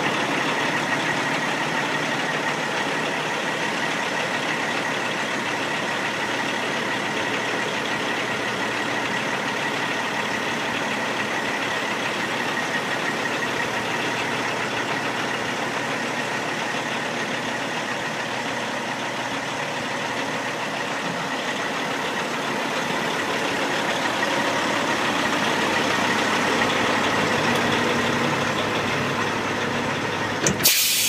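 Diesel engine of a 2006 Freightliner FLD120 dump truck, a 475-horsepower Caterpillar, running steadily while the hydraulic hoist raises the dump box. A steady high whine runs underneath, and the sound swells slightly near the end.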